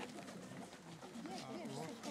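Overlapping chatter of a group of people walking along a road, several voices talking at once, with faint footsteps on the asphalt.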